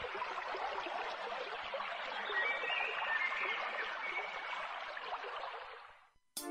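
Steady, even rush of flowing stream water with a few faint high whistling notes in the middle, fading out near the end.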